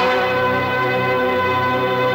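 Background score of held, sustained chords, with no speech.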